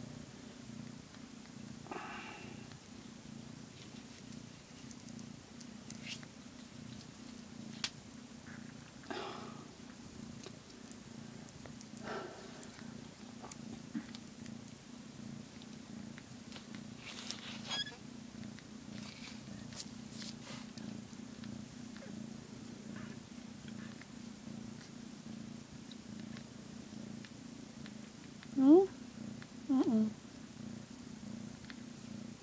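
Mother cat purring steadily while her newborn kittens nurse, with a few faint high squeaks from the kittens. A short rising call near the end is the loudest sound.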